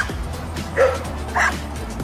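A dog giving two short barks about half a second apart, over background music.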